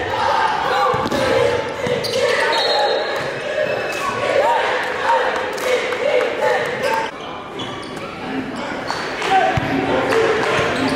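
Live gym sound at a basketball game: a basketball bouncing on the hardwood court as it is dribbled, with unclear voices from players and spectators echoing in a large gymnasium.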